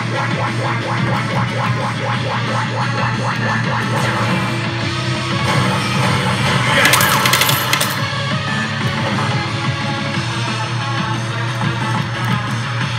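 Rock-style bonus-mode music with electric guitar from a Resident Evil 6 pachislot machine, fast and rhythmic in the first few seconds. A loud, noisy sound-effect burst about six and a half seconds in lasts just over a second.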